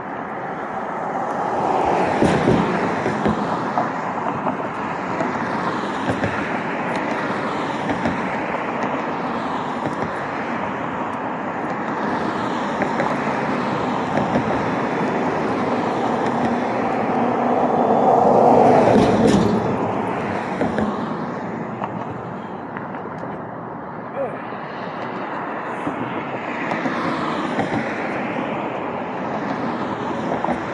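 Street traffic: cars driving past, with one vehicle passing loudly about two seconds in and another, the loudest, around the middle.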